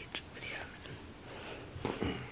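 Soft whispering, low in level, with a light click near the start and a short louder sound just before the end.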